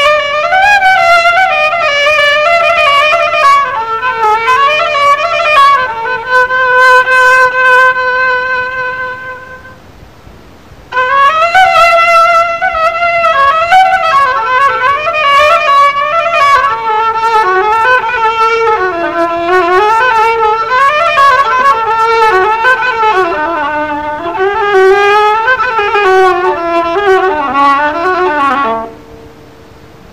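Solo instrumental taqsim: one melodic instrument improvising in long, ornamented phrases with held and gliding notes, pausing briefly about ten seconds in and again just before the end.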